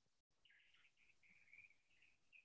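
Near silence, with faint high bird chirping starting about half a second in.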